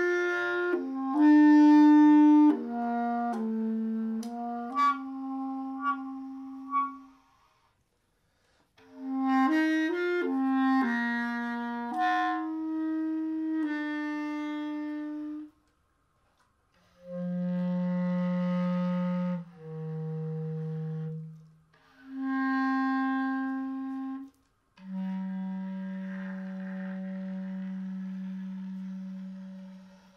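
Solo bass clarinet freely improvising. It plays two phrases of quick, leaping notes, each followed by a silent gap about seven and fifteen seconds in, then a series of longer held low notes, the last one sustained for about five seconds.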